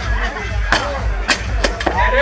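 Four sharp knocks and clanks from loaded barbells with iron plates being handled and set down on rubber mats, over background music with a steady beat and crowd chatter.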